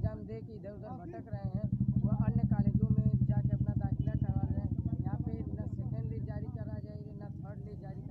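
A motorcycle engine running close by with a rapid low pulsing, growing louder about a second in and fading away near the end, under a man's speech.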